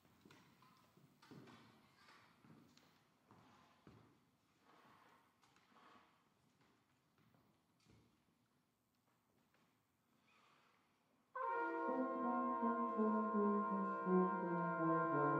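For about eleven seconds there are only faint shuffles, knocks and rustles of players settling with their instruments. Then a brass quintet on 19th-century period instruments, including a Brown and Sons horn of about 1885 pitched in B-flat, comes in suddenly and loudly with sustained chords, opening a minuet in five beats to the bar.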